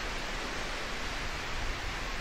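Steady, even rushing beach ambience of wind and surf.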